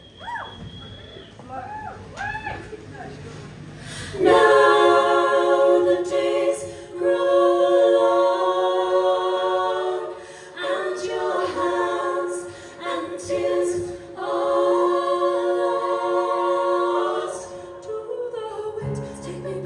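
Several women singing a cappella in close harmony, holding long chords in three phrases that begin about four seconds in; scattered voices call out before the singing starts.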